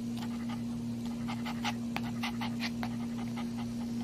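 A Maltese dog in labour panting in quick, short, uneven breaths that come thickest in the middle, over a steady low hum.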